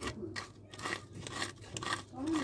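Ferro rod striker scraped back and forth across birch bark in a quick run of short rasping strokes, raising a pile of fine shavings as fire tinder.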